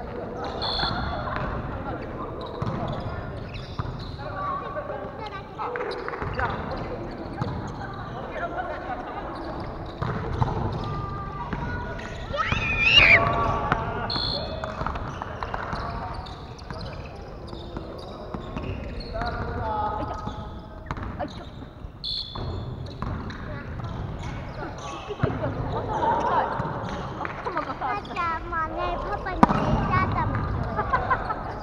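Indoor volleyball play: players' voices calling out and chatting, with the thuds of a volleyball being struck and bouncing on the gym floor. A loud rising call stands out about halfway through.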